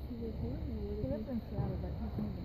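Indistinct murmur of several people talking at a distance, with no words made out.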